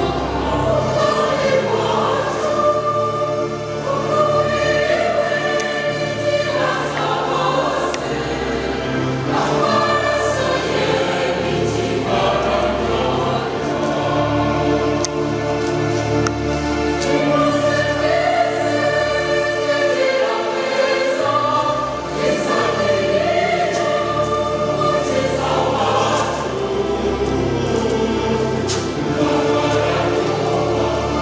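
Church choir singing a hymn in several voices, over a steady low accompaniment.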